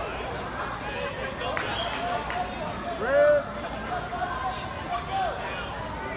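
Spectators' voices at a wrestling match, several people calling out at once, with one loud shout about three seconds in.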